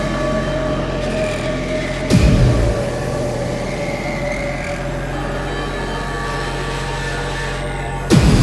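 Beatless breakdown in a 160 BPM hardcore industrial DJ mix: a steady low drone under a held mid-pitched tone, broken by one heavy distorted kick with a falling pitch about two seconds in. The pounding kick drums start again at the very end.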